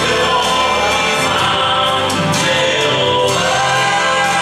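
Gospel song: a man singing into a handheld microphone over musical accompaniment.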